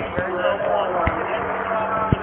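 Indistinct voices in the background over a steady low hum, with two dull knocks, one just after the start and one about a second in.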